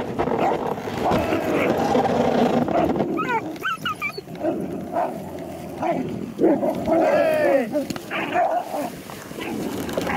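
Greenland sled dogs fighting in a tangle of harness lines: a dense mix of barks and rough vocalising, with high, bending yelps about three seconds in and again around seven seconds.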